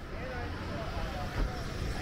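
Busy street sound: voices of passers-by over the low rumble of a double-decker tour bus passing close, with a brief thump about halfway through.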